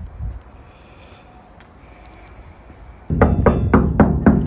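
Knuckles rapping on the glass panel of a front door: a quick series of about five or six knocks starting near the end, after a faint low background rumble.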